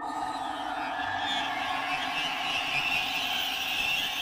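A steady rushing noise comes in suddenly over a sustained music drone.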